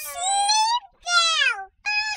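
High-pitched character voice of a talking cartoon frog: two drawn-out vocal sounds, the first rising in pitch and the second, after a short break, falling.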